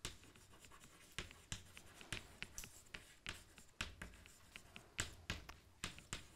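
Chalk writing on a blackboard: a quiet, irregular string of short taps and scratches as a line of words is written out.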